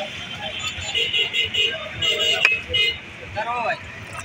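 Busy street: background chatter of people with traffic noise and several short vehicle horn toots.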